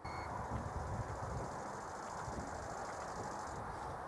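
Steady outdoor background noise with an irregular low rumble, starting abruptly with a short high beep.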